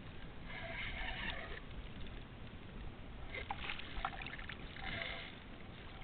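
Water splashing and sloshing against a kayak hull in a few short spells, with a steady wind rumble on the microphone and a few light knocks about halfway through.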